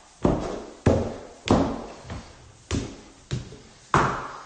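Footsteps climbing hard stair treads: about six separate knocking footfalls, roughly half a second to a second apart, with a short pause near the middle.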